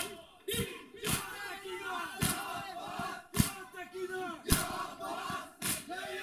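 A crowd of mourners performing matam: open-handed chest strikes landing together about once a second, six times, between which many men's voices chant a noha.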